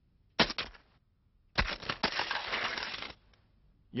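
Cartoon crash sound effects of a toy fighting robot car being struck: a sharp impact with a few quick knocks about half a second in, then a longer crash lasting about a second and a half. This is the finishing blow that wins the battle.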